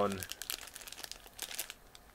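Small clear plastic bag of Lego parts crinkling as it is handled: a run of quick crackles that dies away near the end.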